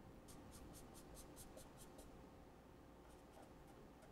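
Faint felt-tip marker strokes on paper: a quick run of about nine short hatching strokes in the first two seconds, then a few more about three seconds in as a word is written.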